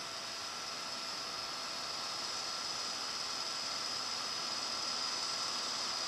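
Steady background hiss of an old tape recording, with a few faint steady high tones running through it.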